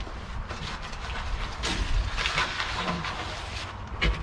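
Rustling and crinkling as a fabric hydration pack and its paper instructions are handled, busiest about two seconds in.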